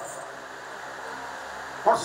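A pause in a man's amplified speech, filled only by a steady background hiss through the sound system; his voice comes back in near the end.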